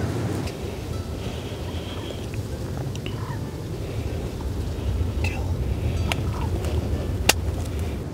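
Steady low rumble with a few faint, short, higher-pitched calls and small clicks, and one sharp click about seven seconds in.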